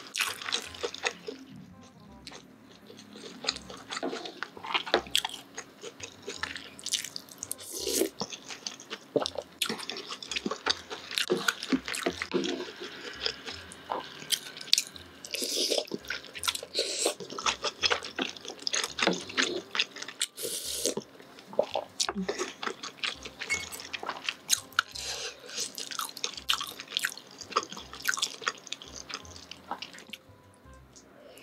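Close-miked eating sounds: irregular wet smacks and slurps of chewing fish cake and chewy rice cakes in spicy sauce, with small clicks of the spoon and fork.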